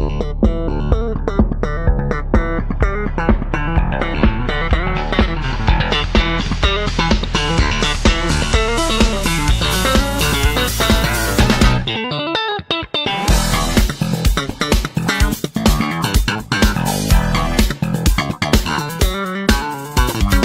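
Background music: an instrumental with bass and guitar over a steady beat. The bass drops out for about a second around the middle, then the beat comes back.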